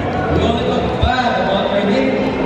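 A voice speaking over a microphone and loudspeakers, echoing in a large hall.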